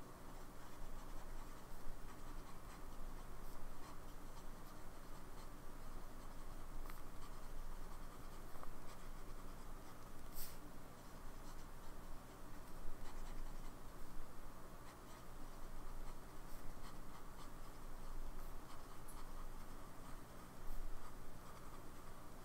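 Lamy Safari fountain pen with a broad (B) steel nib writing on paper: the nib scratching steadily across the page as words are written, with an occasional faint tick.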